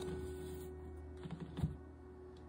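Tarot cards being handled, with a few light clicks and taps of card stock about halfway through, over soft background music holding a steady note.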